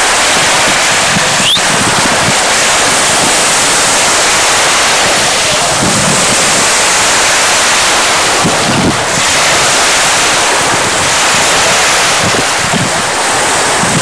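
Steady rush of wind on the microphone mixed with small sea waves washing at the shoreline.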